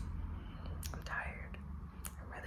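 A pause between a woman's sentences: a soft click about halfway through, then a faint breathy, whispered vocal sound, over a low steady room hum.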